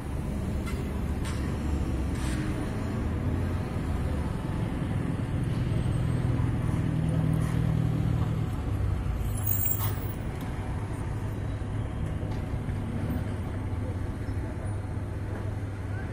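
Construction-site machinery: a diesel engine runs steadily with a low rumble, louder about six to eight seconds in. Scattered sharp knocks are heard through it, and a brief hiss comes just before ten seconds in.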